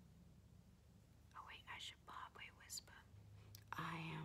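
Faint whispering voice, a few breathy words about halfway through, otherwise near silence; normal speech starts just before the end.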